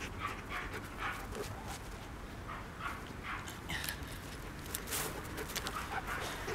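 A dog panting, short breaths about twice a second.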